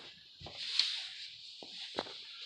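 Faint handling noise: a few light clicks and a soft rubbing hiss in the middle.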